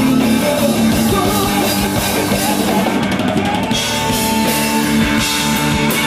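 Live blues-rock band playing with no vocals: electric guitar over bass guitar and a rock drum kit. A quick run of drum hits comes about three seconds in, then a long held note rings over the band.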